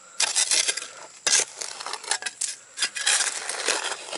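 Steel spade scraping and crunching into stony dirt, several gritty scrapes in a row as soil is levered out of a hole.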